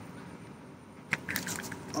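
A sea catfish thrashing as it is held up by the tail, with a few sharp slaps and knocks from its body and fins about a second in.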